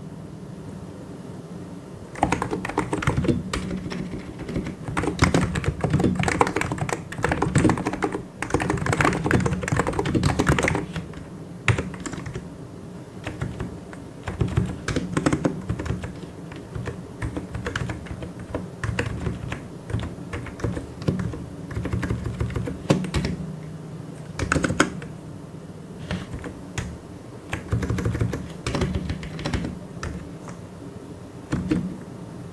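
Fast typing on a computer keyboard, quick key clicks in runs of several seconds broken by short pauses, the longest in the first couple of seconds.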